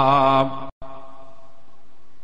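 A man's voice chanting, holding one long note that ends about half a second in; after a brief dropout only faint background hiss remains.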